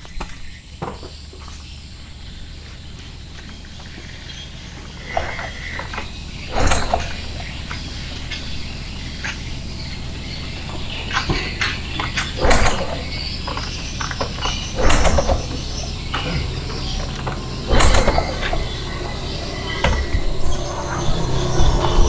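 Honda Supra 125 engine being turned over without starting, for a spark test with no spark plug fitted: a series of irregular mechanical knocks and clatters over a low steady hum.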